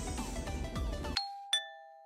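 A two-note ding-dong chime sound effect, like a doorbell, about a second in. A higher tone is followed by a lower one about a third of a second later, and both ring out and fade. Just before the first note, the background sound cuts off abruptly.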